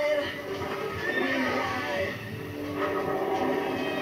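Soundtrack of an animated television commercial playing through a TV's speaker: music with gliding, call-like sounds over it.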